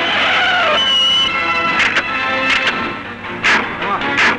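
Dramatic film score with added effects: a brief high screech about a second in, then several sharp hit-and-swish effects in the second half as a fight breaks out beside a car.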